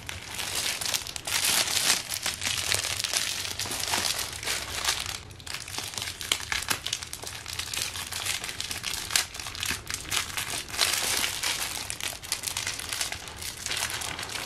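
Clear plastic wrapping film crinkling and rustling as it is handled and pulled off a bag strap, in irregular bursts with a short lull about five seconds in.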